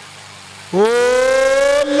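A man's long, loud 'oh' cry over a loudspeaker. It starts suddenly about three-quarters of a second in and is held for about a second, rising slightly in pitch and sounding harsh, then flows straight into speech.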